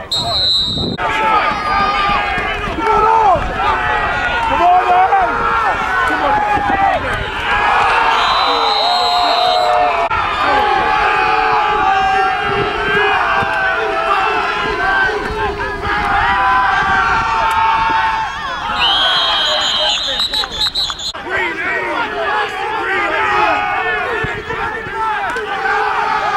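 Indistinct shouting and chatter of many overlapping voices from football players and onlookers, going on throughout. Short steady high-pitched tones cut through three times: near the start, about eight seconds in, and about nineteen seconds in.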